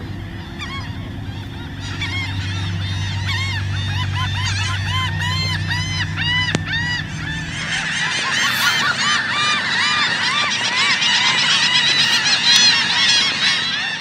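Many laughing gulls calling at once, a dense chorus of overlapping, quickly repeated laughing notes that grows louder and busier about halfway through.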